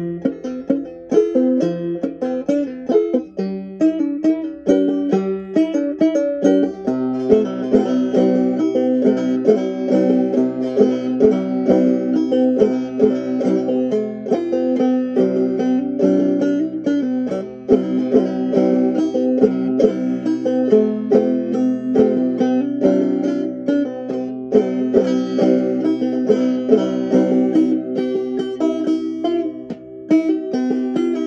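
A banjo played solo, a continuous run of quick plucked notes picking out a melody: a new song still being learned, played through note by note.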